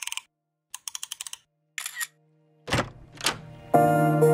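Intro of an electronic dance track: short bursts of rapid crackling, glitchy clicks like a distorted radio, broken by silences, then a low hum and two swooshing sweeps, with the full music of synth chords coming in just before the end.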